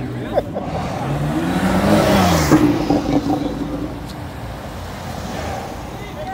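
A car driving off past the crowd, its engine note rising and then falling as it goes by, loudest about two seconds in.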